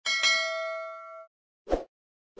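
Notification-bell sound effect: a bright ding of several ringing tones that fades out over about a second, followed near the end by a short, low pop.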